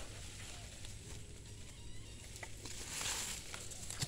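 Quiet background with a low rumble, soft rustling that swells twice and a few faint small clicks.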